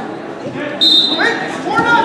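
Referee's whistle, one short shrill blast about a second in, signalling the wrestlers to start from the referee's position; shouting voices follow in a reverberant gym.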